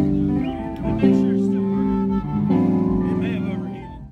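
Live band playing sustained chords. The chord changes about a second in and again about two and a half seconds in, and the music fades out at the end.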